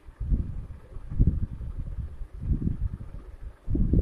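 Uneven bursts of low rumbling noise on the microphone, with almost nothing in the higher pitches.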